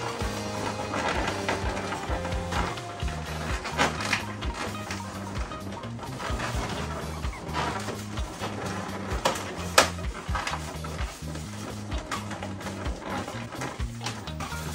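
Background music with a steady bass line. Over it, a few sharp squeaks and rubs of latex modelling balloons being handled and twisted, the sharpest about four seconds in and again near ten seconds.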